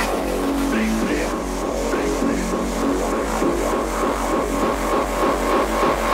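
Uptempo hardcore electronic music: a fast, steady kick-and-bass pulse, about four beats a second, under a repeating synth line.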